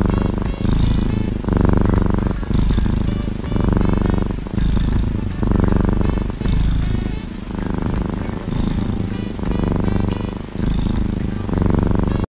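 Tabby kitten purring loudly close to the microphone, the purr swelling and easing in regular cycles a little over a second apart as it breathes, content while its head is stroked with a toothbrush.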